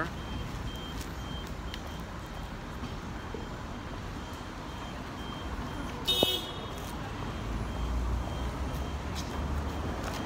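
Street traffic: a steady hum of passing cars, with a heavier vehicle rumbling past in the second half. A faint electronic beep repeats steadily, and a short shrill toot sounds about six seconds in, the loudest moment.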